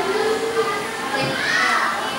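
Many children's voices chattering and calling out over one another, with one higher voice rising above the rest near the end.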